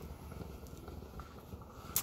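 Faint handling noise of a camera being moved and lowered: a low rumble with a few light knocks, and a sharp click near the end.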